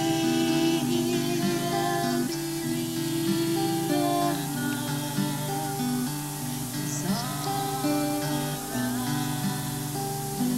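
Two people singing a song with long held notes, accompanied by a strummed acoustic guitar.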